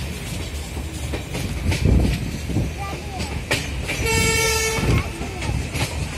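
Passenger train running, with the steady rumble and clatter of wheels on the track heard from inside a carriage. About four seconds in, a train horn sounds for about a second.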